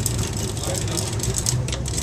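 A boat's engine running with a steady low drone.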